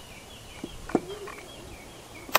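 A few faint clicks of small parts as the throttle linkage is hooked onto a chainsaw's carburetor, the sharpest about a second in. Faint high chirping repeats in the background throughout.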